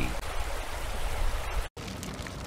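Steady rushing of running water, like a stream, cutting out abruptly for a moment shortly before the end.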